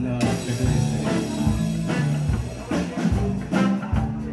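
Live rock band playing: electric guitar, bass guitar and drum kit in a steady groove, with repeated drum hits over sustained bass notes.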